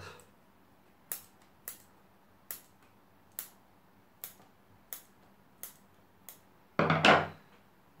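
Bonsai scissors snipping side shoots off Juniperus chinensis cuttings: about nine short, sharp snips, one every half second to a second. Near the end comes one louder, longer handling noise.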